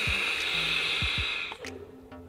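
A drag on a vape tank: air hissing steadily through the tank's airflow as it is drawn in, stopping about a second and a half in.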